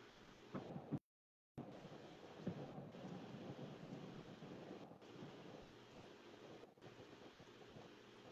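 Near silence: faint hiss on a video-call audio line, with a brief total dropout about a second in.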